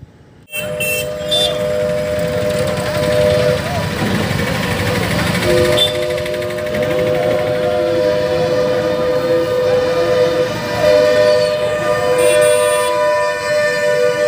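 Street noise of a moving procession with motorbikes and cars, a vehicle horn sounding a steady two-note chord in long held blasts, with a short break about four seconds in, over voices of the crowd.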